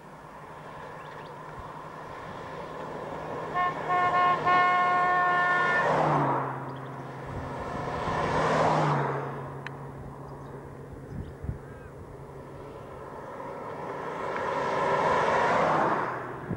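Cars passing close by on a country road, one after another. As one approaches, its horn sounds two short toots and then a longer one. The engine note drops in pitch as each car goes past, and another car comes up near the end.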